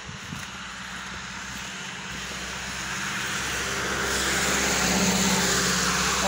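A car approaching on a wet street: engine hum and tyre hiss grow steadily louder and are loudest near the end.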